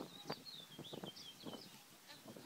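A small bird chirping: a quick run of short, high, wavering chirps, with a scatter of faint irregular knocks or claps underneath.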